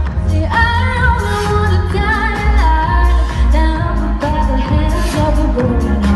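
Live pop music played loud, with a heavy, steady bass beat and a woman's sung vocal line coming in about half a second in.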